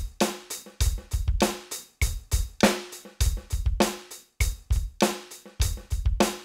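Electronic drum kit played with sticks, heard through its sound module: a rock groove of steady hi-hat eighth notes, an accented snare backbeat and a syncopated bass drum, the same bar repeating about every two and a half seconds.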